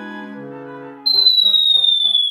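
A cartoon-style whistle sound effect: a single high tone that comes in sharply about halfway and glides slowly down in pitch, following soft plucked background music notes.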